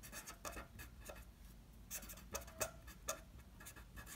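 Felt-tip marker writing on paper: faint, short, irregular scratching strokes as words are written by hand.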